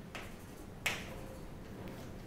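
Chalk striking a chalkboard: a light tap near the start and a sharper, louder tap just under a second in.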